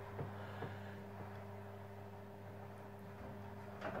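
Electric motorised projector screen's motor running with a low, steady hum as the screen rolls up, a few faint ticks over it; it runs smoothly.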